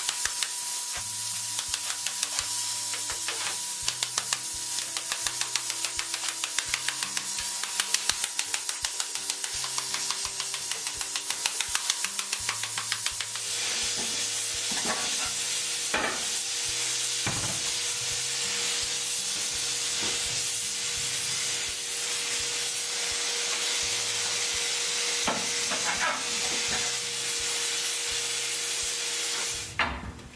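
Freshly set hot steel buggy tire hissing and sizzling as it is cooled with water, the steam hiss steady. Rapid crackling runs through the first half, and a few knocks follow in the second half.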